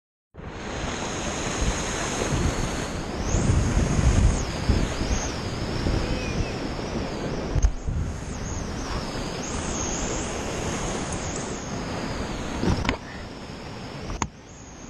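Rushing whitewater of a river rapid on an action camera's microphone, steady and loud, with wind buffeting the mic in low gusts. Near the end there is a knock, and the rush drops away as the kayak slips into calmer water beside a boulder.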